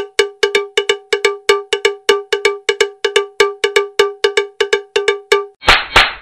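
Title-sequence sound effect: a fast, even run of pitched metallic taps all on one note, about five a second, each dying away quickly, ending about 5.5 seconds in with a short whoosh.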